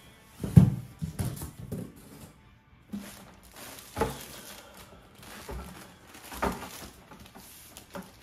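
A large cardboard box in a loose plastic bag being handled on a wooden turntable: a few dull knocks as the box is tipped and set down, the loudest near the start, with plastic crinkling and shuffling between them.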